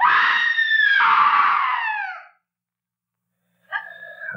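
A woman's long, high-pitched scream lasting about two seconds, falling in pitch as it dies away: a hysterical outburst from a character in a radio drama.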